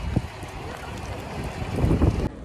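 Wind buffeting a phone's microphone outdoors: an unpitched low rumble that swells near the end.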